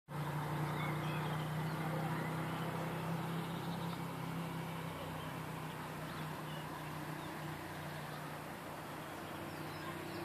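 Steady low engine hum that slowly fades, over an even outdoor hiss, with a few faint bird chirps.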